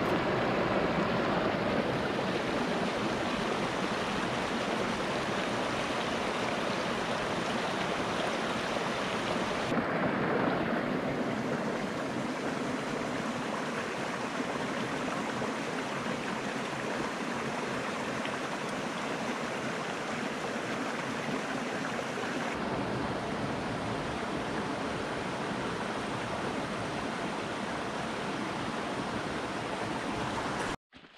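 Small rocky stream running and splashing over stones in a steady rush of water. The sound shifts abruptly about ten seconds in and again a little past twenty seconds.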